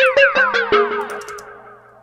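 Synth pluck notes with a heavy echo, run through a flanger that bends their pitch up and down. The notes come quickly for about a second, then the flanged echoes fade away.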